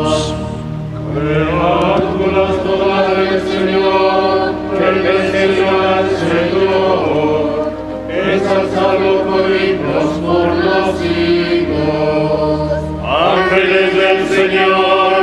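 Choir singing a liturgical chant at a Catholic Mass, in several long sustained phrases with short breaks between them.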